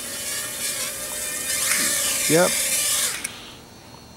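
Cheerson CX-30 mini quadcopter's motors and propellers whining steadily, then cutting out about three seconds in as it sets down. The battery appears to have reached low-voltage cutoff with no warning.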